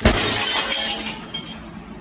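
Glass shattering: a sudden crash with tinkling fragments that fades over about a second and a half.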